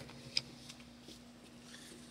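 Tarot cards being handled in the hands: one sharp snap of the cards about a third of a second in, then a few faint light ticks, over a faint steady hum.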